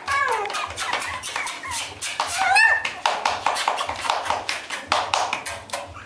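Beagle puppies scrabbling about a wooden box lined with newspaper: a quick, uneven run of clicks and rustles from claws and paper. Short high gliding cries and voices come over it near the start and again a little past halfway.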